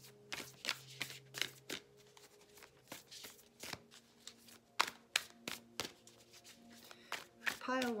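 Whispers of Love oracle cards being shuffled by hand: a run of irregular soft snaps and clicks, with a faint steady low hum underneath.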